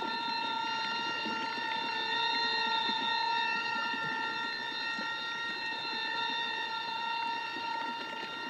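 A single held drone tone with a stack of overtones, steady and unchanging, over a faint crackly noise bed.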